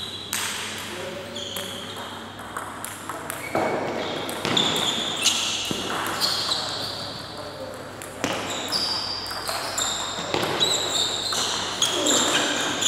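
Table tennis ball clicking off the paddles and the table during a rally, a series of sharp, short clicks. High squeaks of a few tenths of a second sound between the clicks.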